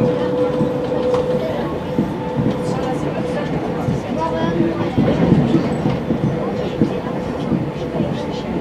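RER A MI84 electric multiple unit running at speed, heard from inside the carriage: steady rolling noise with clicks from the wheels over the rails. A steady hum fades out about a second in.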